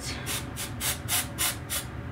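Aerosol dry shampoo sprayed onto the hair roots in a quick series of short hissing puffs, about four a second.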